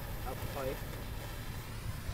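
A man says a short word, "up", over a steady low rumble.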